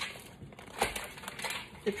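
Granulated sugar being scooped with a half-cup measure and tipped into a saucepan: a gritty crunching, with a sharp knock a little under a second in.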